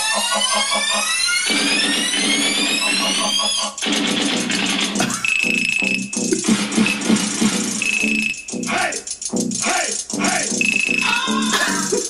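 A home-made instrumental beat playing from a posted audio clip. It opens with a stack of rising synth sweeps, then drops into a beat with a short, high beep that recurs every couple of seconds.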